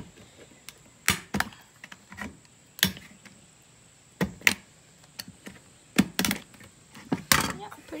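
Utility knife cutting a hole through a thin plastic jug, with the jug handled on a wooden workbench: an irregular run of sharp clicks, snaps and knocks, about a dozen in all.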